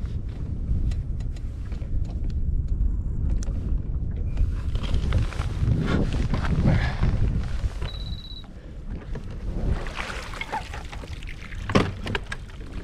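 Wind on the microphone and water against a small boat's hull, with scattered handling clicks, a short high electronic beep about eight seconds in and a sharp knock near the end.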